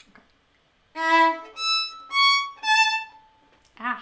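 Solo violin playing four separate bowed notes, starting about a second in, the last one held longest: a slow demonstration of the finger spacing across shifts in a passage of an etude.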